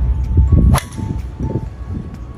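Golf driver swung hard and striking a ball off the tee: a low rush through the downswing, then one sharp crack of impact a little under a second in, with music playing underneath.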